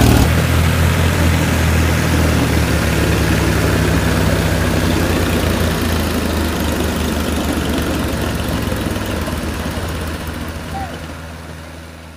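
Mahindra 575 DI and 265 DI tractor diesel engines running steadily under load as the two tractors pull against each other on a tow chain. The engine sound fades out over the last few seconds.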